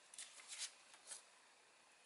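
Faint, brief rustles of a folded square of origami paper being picked up and turned over in the hands, a few soft crinkles in the first half.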